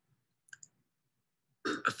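Near silence with two faint, brief clicks about half a second in; a voice starts speaking near the end.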